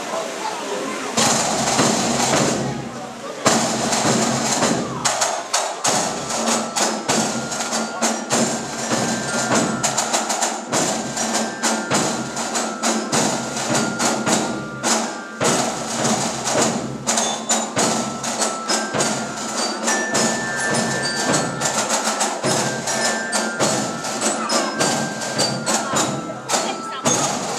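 Scout drum band playing: rapid snare-drum rolls and strokes over a steady bass-drum beat, with high bell tones carrying a tune. The band comes in about a second in.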